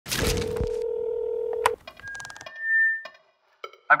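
Electronic sound-design tones: a thud with a steady mid-pitched tone that cuts off with a sharp click after about a second and a half, then a quick run of ticks and a higher beep that swells and fades.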